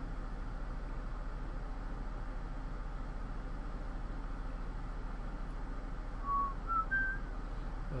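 Steady low hum and background hiss, then three short whistled notes, each a step higher than the last, about six seconds in.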